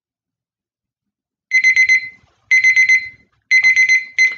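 Digital countdown timer going off: high electronic beeps in quick groups of four, one group a second, starting about one and a half seconds in. It signals that the timed work period is up.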